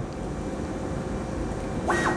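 Creality CR-10 SE 3D printer running with a steady whir from its fans. Near the end its stepper motors start a high whine as the print head begins moving at the start of a print.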